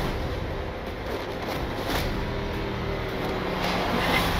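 Film trailer soundtrack: a dense, rumbling sound-effects swell under a music bed, with held low notes coming in about halfway through.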